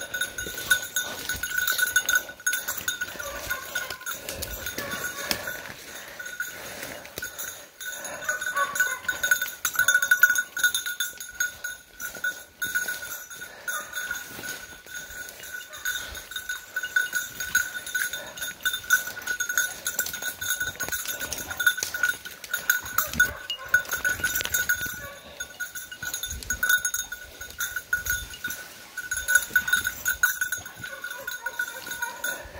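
A bird dog's collar bell ringing, jingling irregularly as the dog hunts through thick cover. Crackling brush and footsteps through undergrowth run under it.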